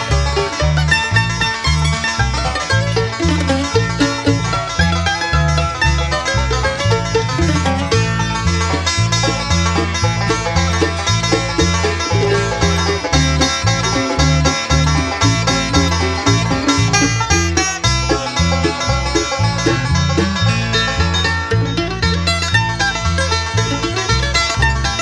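Bluegrass band playing an instrumental tune: banjo leading over guitar, mandolin and fiddle, with a bass walking steadily underneath.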